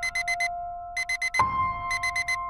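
Electronic alarm beeping in quick sets of four, repeating about every half second to second, over held musical tones.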